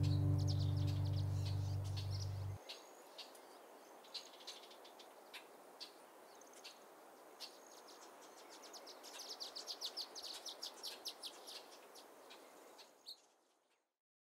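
Guitar music fading out and stopping about two and a half seconds in, then faint birds chirping, with a quick run of chirps around ten seconds. The sound cuts off about a second before the end.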